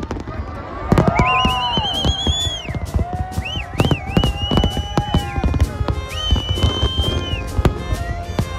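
Fireworks going off: rapid bangs and crackles with several whistling fireworks overlapping, their whistles rising and warbling, then holding a high tone for a second or two. It grows loud about a second in.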